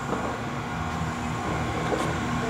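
A steady low mechanical hum and rumble with a faint steady tone above it, like ventilation or machinery running in a workshop.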